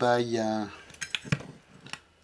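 A few sharp metallic clicks and taps about a second in, as hands handle the metal plates and parts of an opened aircraft angle-of-attack sensor.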